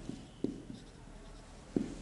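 Marker pen writing on a whiteboard: faint strokes with a few short soft ticks.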